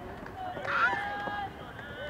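Raised voices calling out, loudest in one shout a little under a second in, over low outdoor background noise.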